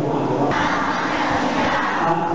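A large group of boys chanting aloud together from printed texts, many voices overlapping into a dense, uneven chorus.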